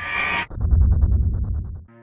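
A man's sudden rising cry that breaks into a loud, rough, guttural yell of shock at finding the pet fish dead. The yell cuts off abruptly near the end.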